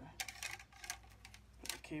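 Scattered light clicks and rattles of a plastic LED ring light and its cable being handled.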